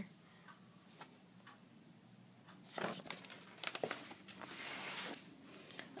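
Paper pages of a large sketchbook rustling as they are handled and moved. The first half is almost quiet, then come several short rustles and scrapes.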